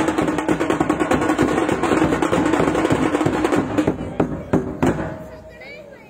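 A drum troupe playing large double-headed barrel drums (dhol) in a fast, dense rhythm, which fades out about five seconds in.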